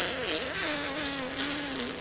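A man's long wordless vocal drone, made with his tongue sticking out. It wavers in pitch at first, then holds low and sinks slightly before stopping near the end.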